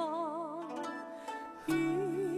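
Live concert music: a high voice holds a note with wide, even vibrato over plucked-string and sustained accompaniment, then drops away, leaving the held accompaniment; a louder new phrase begins near the end.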